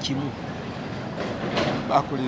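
A pause in conversation: a man's voice trails off, then comes back faintly near the end, over a steady hum of background noise.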